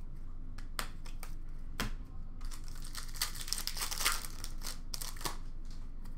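Trading cards being flipped through and slid against one another by hand: scattered light snaps and paper rustles, busiest in the middle.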